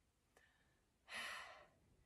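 A woman's long audible exhale through the mouth, a cleansing breath out, about a second in and lasting about half a second.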